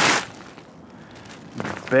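Plastic bag crinkling loudly for a moment at the start as a backpack is pulled out of it, then faint rustling of the bag and pack.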